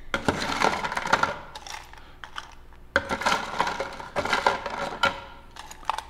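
Ice cubes scooped out of a bowl of ice and tipped into a cocktail shaker, clattering and clinking in several scoopfuls, about one every second or two.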